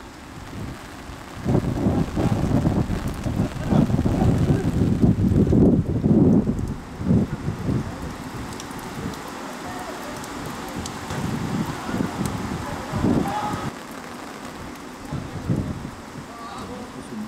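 Wind buffeting the camera's microphone in heavy gusts for several seconds, then easing to a lower rumble, with faint shouts from players on the pitch.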